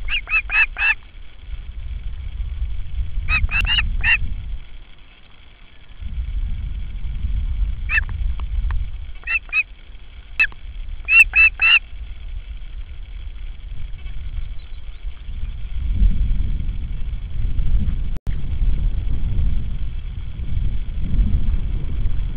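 Osprey calling: groups of short, sharp, high whistled calls, mostly four in quick succession, repeated several times during the first twelve seconds. Gusting wind rumbles on the microphone throughout and is the only sound after the calls stop.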